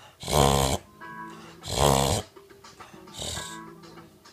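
A Boston Terrier gagging and hacking as if trying to bring up a hairball, in three loud rough bursts about one and a half seconds apart, the last one weaker.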